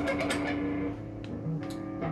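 Electric guitar played through an amp: a single note held and ringing out, fading after about a second, then a couple of short picked notes near the end.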